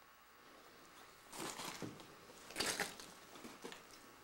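Scuffing, crunching footsteps on a gritty, debris-strewn floor: two louder clusters, about a second and a half in and just past the middle, then a few lighter scuffs near the end.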